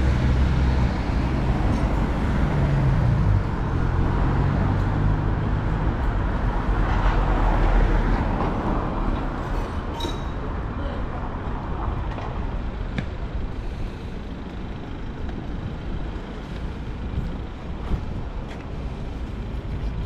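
Road traffic: a car's engine running close by for the first few seconds, then the noise of passing cars swelling around seven or eight seconds in and easing off.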